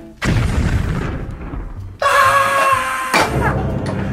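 A deep boom sound effect hits just after the start and dies away over about two seconds. It is followed by a held musical chord, then another low hit near the end, as edited-in comic music.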